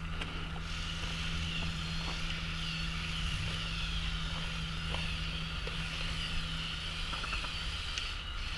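LEGO Technic trial truck's XL electric drive motor and reduction gear train whining steadily as the model crawls over loose dirt, with a few faint clicks.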